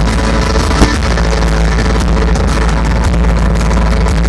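Rock band playing live through a stage PA: electric guitars, bass guitar and drum kit, dense and loud with a heavy low end, and one sharper hit a little under a second in.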